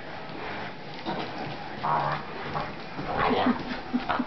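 A boxer-mix and a boxer puppy play-fighting: irregular scuffling with short dog vocal sounds, a few brief low ones near the end.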